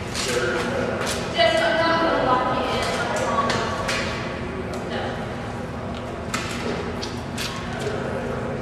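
Indistinct voices of people talking, with one drawn-out voice falling in pitch from about a second and a half in, and scattered knocks and clicks.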